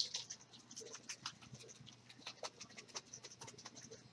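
A small bottle of color mist spray ink being shaken by hand, giving a faint, quick, irregular run of clicks and ticks.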